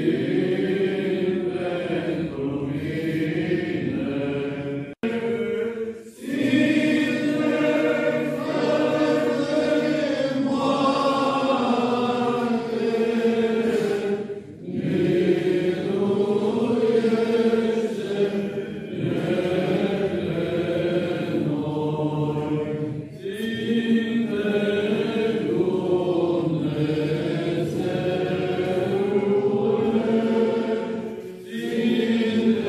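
Eastern Orthodox liturgical chant sung by several voices, in long sustained phrases with brief pauses between them and a sudden break about five seconds in.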